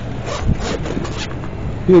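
A few short rustling scrapes of something being handled, over a steady background hum.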